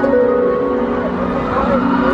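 Slow, ambient live music over a festival PA: long held keyboard or synth notes layered on one another, with a voice or lead line gliding between them and no beat.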